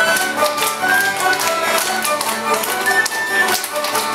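A folk dance tune played on melody instruments, with many hands clapping along to the beat.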